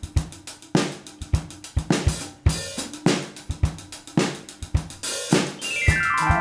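Drum kit playing a steady groove on its own: kick drum, snare and hi-hat. A swell builds near the end as pitched instruments start to come in.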